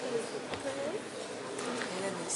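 Low, steady murmur of many students talking among themselves in a lecture hall, a buzz of overlapping voices with no one voice standing out.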